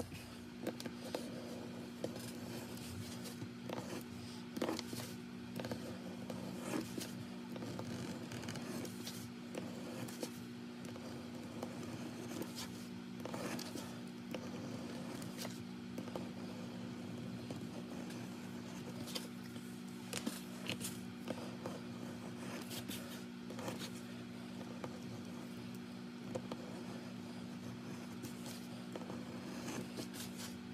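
Hand shears cutting through leather, a run of short, irregular crunching snips and scrapes as the blades close through the hide. A steady low hum runs underneath.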